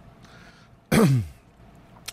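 A man clearing his throat once, about a second in: a short, loud, rasping sound whose pitch drops.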